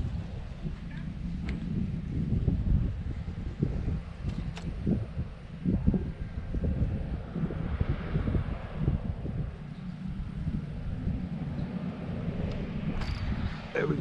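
Wind buffeting the microphone: a low, gusty rumble that rises and falls throughout, with a few faint clicks.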